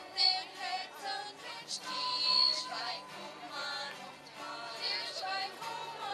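A school choir of young voices singing a Christmas carol with held notes, accompanied by an acoustic guitar.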